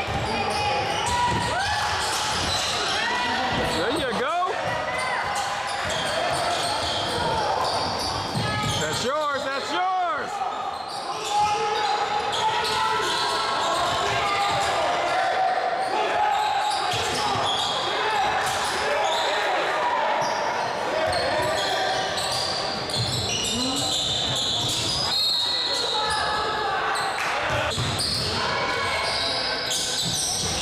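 Basketball game in a gym: the ball bouncing on the hardwood court, sneakers squeaking in short sweeps, and players and bench calling out, all echoing in the large hall.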